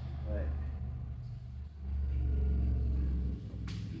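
A low steady rumble that swells about two seconds in and drops away shortly before the end, under a single spoken word at the start.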